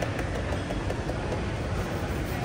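Moving escalator running with a steady low rumble, under the background noise of a busy shopping mall.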